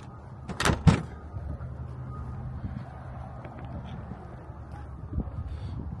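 Kenworth W900 truck's diesel engine idling with a steady low hum, with two sharp knocks close together near the start.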